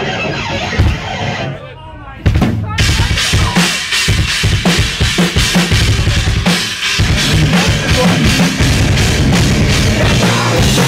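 A live hardcore/metal band comes in suddenly about two seconds in, after a moment of talk on stage. It plays loud and dense from then on, with heavy kick drum and snare hits under bass and guitars.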